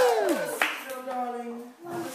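A held sung note in the music sliding down in pitch and cutting off about half a second in, followed by a small audience clapping, with a voice over the clapping.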